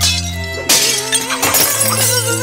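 Cartoon background music, broken under a second in by a loud crashing, shattering sound effect, with further hits shortly after.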